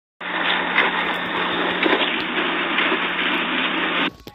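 Doorbell camera's own audio track: a loud, steady rushing noise with a low hum under it, thin and telephone-like in tone. It starts abruptly just after the start and cuts off suddenly at the end.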